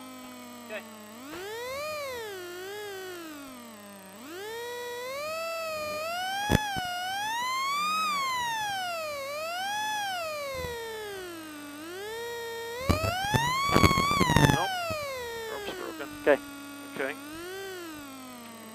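A car engine revving up and down again and again while its wheels spin, as a rally car is worked out of a deep snowbank. There is a sharp crack about six and a half seconds in, and a burst of loud knocks around thirteen to fourteen seconds.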